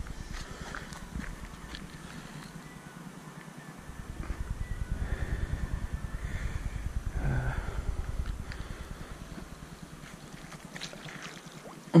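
Wind buffeting the camera microphone as a low rumble, strongest from about four to nine seconds in, with a few faint clicks.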